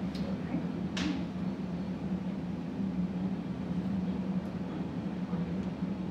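Steady low hum of room background noise, with a single sharp click about a second in.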